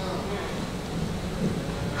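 Steady low rumbling room noise with no distinct event.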